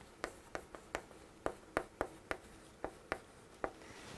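Chalk writing on a chalkboard: a run of short, sharp chalk taps and strokes, about three a second, some louder than others, as a line of Korean text is written out.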